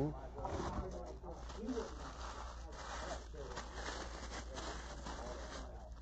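Crinkled packing paper rustling and a cardboard box being handled as it is unpacked, quiet and irregular.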